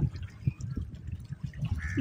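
Shoreline ambience: a fluctuating low rumble of wind on the microphone with water lapping against the rocks, and a few faint small clicks.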